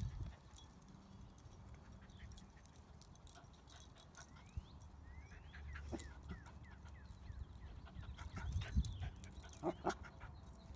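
A puppy making faint, high, short whimpers and yips while it plays, with a louder pair of yips near the end.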